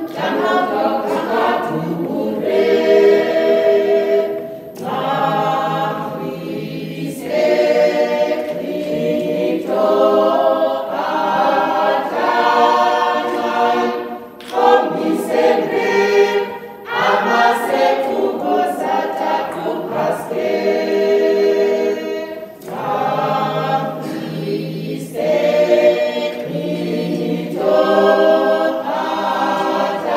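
Small mixed choir of men and women singing a cappella, in phrases of long held notes broken by short pauses.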